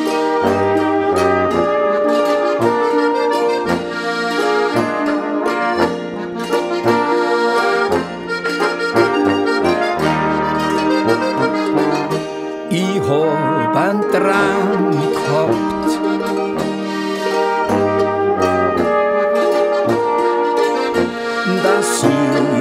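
Tyrolean folk band playing an instrumental passage: brass led by trombone and trumpet over accordion, with a low bass line underneath.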